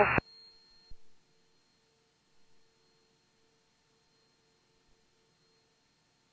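Near silence on the aircraft's radio audio feed after a transmission cuts off at the very start, leaving only faint, on-and-off electronic tones.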